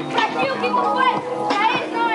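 A man rapping a freestyle verse in Portuguese over a hip-hop beat, with other voices around him.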